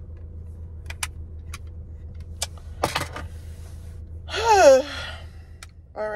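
Low steady hum of a car idling, as heard inside the parked car, with a few light clicks and taps, one louder about three seconds in. Past the middle, a short vocal sound that falls in pitch, like a sigh or groan, is the loudest thing.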